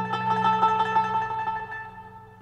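Plucked string instrument music: a melody played with rapid repeated strokes over low sustained notes, growing quieter near the end.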